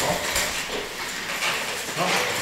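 Scattered clatter, light knocks and shuffling as people settle back into chairs at tables after standing.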